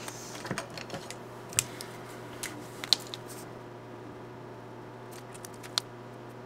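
Scattered small clicks and taps of hands handling a clear plastic cash envelope in a ring binder and then a marker pen. The clicks are thickest in the first few seconds, thin out in the middle and pick up again just before the end.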